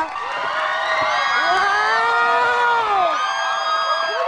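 Studio audience cheering, with many voices whooping over one another in rising and falling cries.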